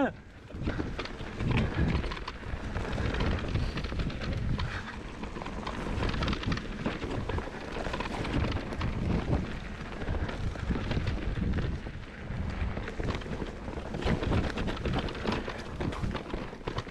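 Mountain bike ridden fast down a rough dirt trail: continuous tyre rumble on the dirt with frequent knocks and rattles from the bike over bumps and roots, rising and falling in loudness.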